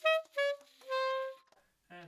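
Alto saxophone playing the closing notes of a 9/8 study: two short notes stepping down, then a held lower final note that stops about a second and a half in.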